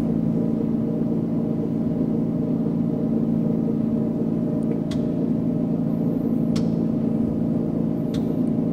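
Simulated propeller-aircraft engine sound from a flight-training simulator: a steady, even drone at reduced approach power. Two faint clicks come about five and six and a half seconds in.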